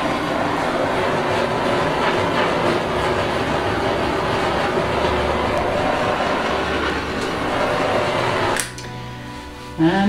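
Steady rushing hiss of the tool used to pop air bubbles on the surface of a wet acrylic pour. It cuts off sharply near the end.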